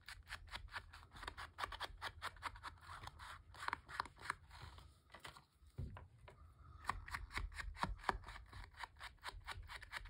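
An ink blending tool brushed in quick, repeated strokes over an ink pad and the edges of a paper photo print: a fast run of scratchy rubbing strokes, about four to five a second, with a short lull around five and a half seconds in.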